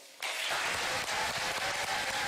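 Audience applauding, starting a moment in and holding steady.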